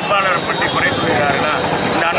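Speech only: a man talking in Tamil close to the microphones, over steady outdoor background noise.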